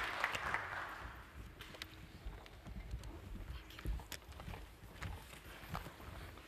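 Audience applause dying away within the first second, then faint scattered footsteps and knocks as people walk up and settle in.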